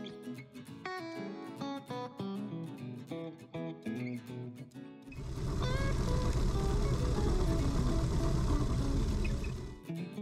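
Acoustic guitar background music. About halfway through, a loud, dense rumbling noise takes over, heard from inside a Kärcher push floor sweeper's hopper as its brushes sweep debris off a concrete floor. The noise cuts off suddenly just before the end.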